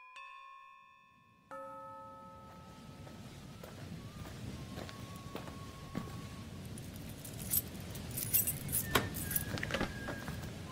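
A held, bell-like electronic note fades out, and about a second and a half in a new chime sounds. A low noisy bed then slowly builds, with scattered sharp clicks and bright jingling bursts in the second half.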